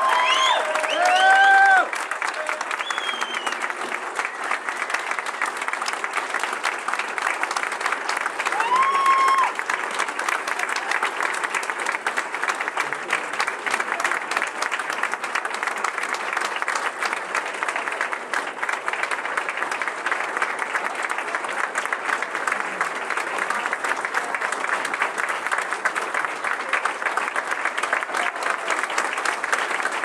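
Audience applauding steadily for the whole stretch, with a few voices calling out over it near the start and again about nine seconds in.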